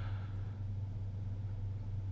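Steady low hum with a faint hiss, unchanging throughout: the recording's background noise during a pause in speech.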